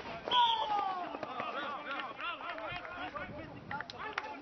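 Several voices calling and shouting across a rugby league pitch after a tackle, with one louder, long falling shout about a quarter second in.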